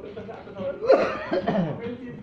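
Indistinct chatter of people in a room, with a loud cough about a second in.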